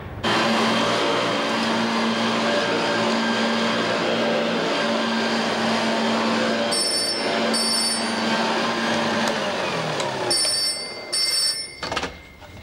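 A vacuum cleaner motor runs loud and steady, then is switched off and winds down with falling pitch about ten seconds in. A telephone gives the double ring twice, once while the motor is still running and once after it has stopped, before it is answered.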